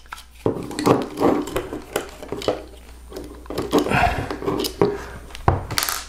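Small clicks, taps and scrapes of a precision screwdriver and hand tools on a 3D printer's plastic hotend housing as its heater-block cooling fan is unscrewed, with parts knocking on the tabletop and a sharper knock near the end.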